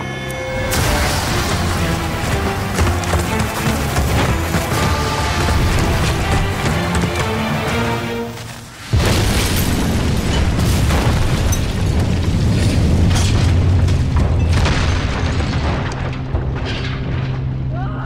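Dramatic music score layered with booming explosion sound effects of nitroglycerin rock blasting. The sound drops briefly, then a sudden loud blast hits about nine seconds in.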